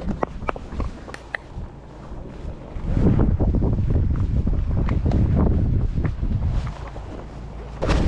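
Wind buffeting the microphone: a low rumble that grows loud about three seconds in and eases just before the end, with a few faint clicks in the quieter stretch before it.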